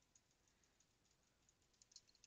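Near silence, with faint computer-keyboard typing: light irregular key clicks, several a second.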